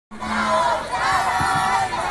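A group of high-pitched voices shouting together in long, wavering whoops, the calls of dancers in an Andean cattle-marking dance.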